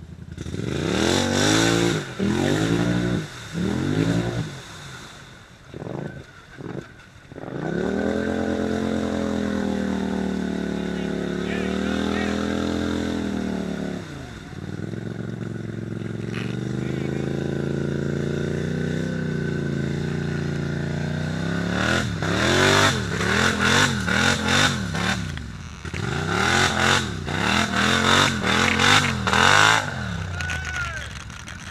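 ATV engine revving hard under load while stuck in a deep mud hole. It comes in short bursts at first, is held at high revs for long stretches, then is blipped rapidly near the end.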